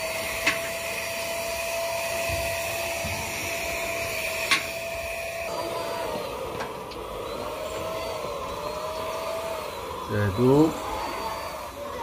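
A motor running steadily with a whine that holds one pitch for about six seconds, then dips and rises a few times, over a steady hiss and a few sharp clicks. A brief voice cuts in near the end.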